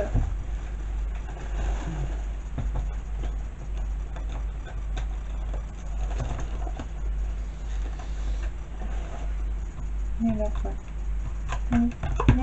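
Small taps, scrapes and rustles of a pointed tool and fingers working a stuck item out of a cardboard box compartment, then handling a small card, over a steady low hum; a few murmured words near the end.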